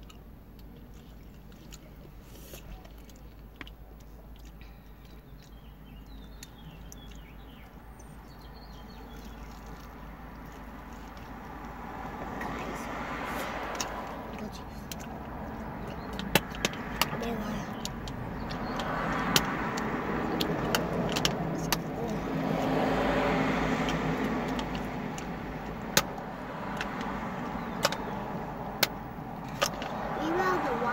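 Road traffic passing outside, heard from inside a parked van's cabin: a low hum that swells and fades three times over the second half. Scattered sharp clicks in the second half.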